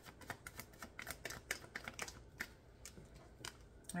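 Tarot cards being shuffled by hand: a quick, irregular run of light clicks and flicks as the cards slip against each other, thinning out near the end.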